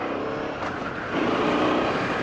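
Honda XL650V Transalp's V-twin engine running as the motorcycle rides along a dirt track, getting louder about a second in.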